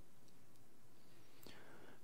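Pause in speech: faint steady room tone and hiss, with a soft click and a breath near the end before speaking resumes.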